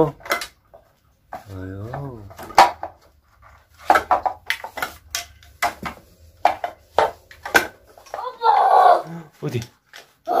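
Hard plastic toy pieces knocking and clattering in a scattered series of sharp clicks as a plastic ball-drop tower is handled and pulled apart, with a child's short vocal sounds about two seconds in and again near the end.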